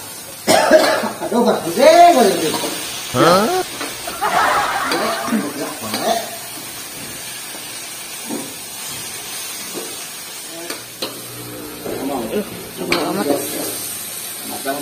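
Stir-frying water spinach in a wok: a metal spatula scraping and clicking against the pan over a faint sizzle. People's voices are loud over it in the first half and again near the end.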